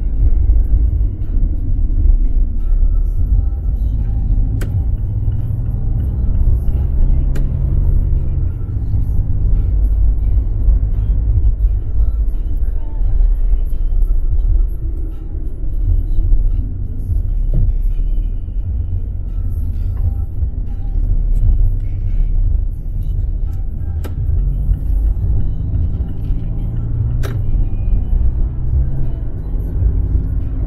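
Car engine and road noise heard from inside the cabin while driving: a steady low rumble, with the engine note shifting a few times.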